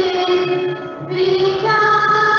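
A school prayer sung in long held notes over instrumental accompaniment. The singing breaks off briefly just before a second in, then resumes.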